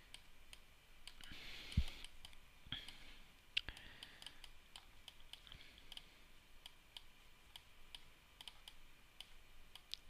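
Faint, irregular computer mouse clicks, a string of them, with a soft thump just under two seconds in.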